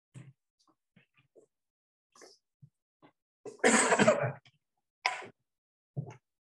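A man's loud throat-clearing cough a little past halfway through, followed about a second later by a shorter one, among faint scattered taps.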